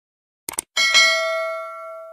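A short click about half a second in, then a notification-bell chime that rings out and slowly fades.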